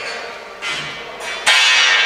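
Metal parts clanging: a sharp metallic strike about half a second in and a much louder one about a second and a half in, each ringing on like a struck bell.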